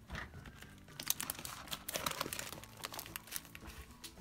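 Clear plastic packaging on craft paper pads crinkling in irregular crackles as the packs are handled and moved.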